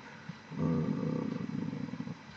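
A man's drawn-out hesitation sound, 'euh', at a low pitch and with a rough edge. It starts about half a second in and is held for about a second and a half.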